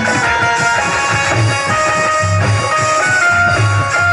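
Instrumental interlude of live Haryanvi ragni accompaniment: a melody of held notes over a regular low drum beat.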